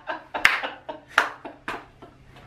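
About half a dozen sharp hand claps at an uneven pace.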